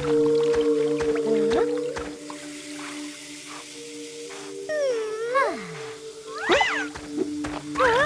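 Cartoon background music with long held notes, joined in the second half by a cartoon character's wordless vocal sounds that slide up and down in pitch.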